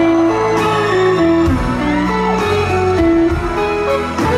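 A band playing an instrumental passage, with a hollow-body electric guitar picking a melody of single held notes, some of them bent, over a steady low accompaniment.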